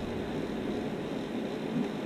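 Steady, even background noise, a faint hiss of room tone between spoken phrases.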